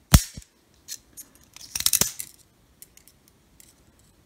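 Okapi folding knife made in Germany, its blade snapping against the backspring with one loud sharp click. About two seconds in comes a quick run of smaller metallic clicks from the blade and lock.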